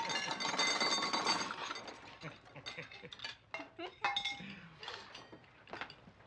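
Silverware clinking and scraping against china plates and glassware at a crowded dinner table: a run of small sharp clinks, busiest in the first two seconds and sparser after.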